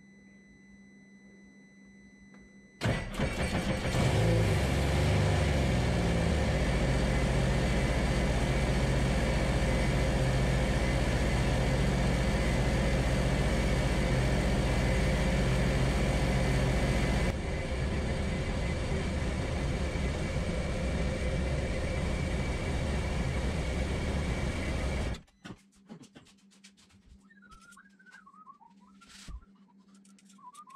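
2013 Sea-Doo GTX-S 155's Rotax three-cylinder four-stroke engine starting about three seconds in, surging briefly, then running steadily on the trailer out of the water. It gets a little quieter past the middle and shuts off suddenly near the end. It is a short run to circulate the fresh oil after an oil change, before the dipstick check.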